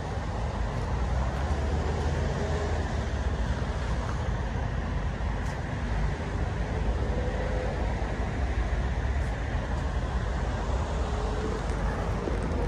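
Steady background rumble of road traffic, with no single vehicle standing out.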